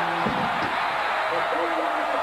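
Stadium crowd cheering after a touchdown, a steady, dense noise of many voices with a few single voices faintly above it.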